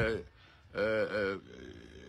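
A man's voice making one drawn-out vocal sound, a little under a second in and lasting about two-thirds of a second, with only faint background before and after.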